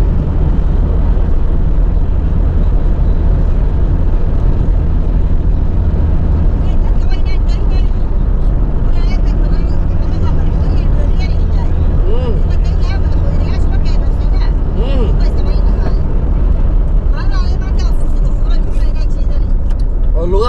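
Steady low rumble of a car's engine and tyres on the road, heard from inside the cabin while driving at cruising speed.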